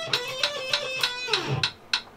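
Electric guitar playing a fast picked exercise at 200 beats per minute over a click track, the clicks about three a second. The phrase ends about one and a half seconds in with the last note sliding down in pitch, and the clicks carry on alone.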